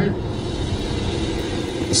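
Steady road and wind noise inside a moving car's cabin: an even rush with no distinct tones.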